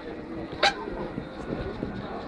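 A 20-inch trials bike hopping up onto a rock, with one sharp clack about two-thirds of a second in as it lands.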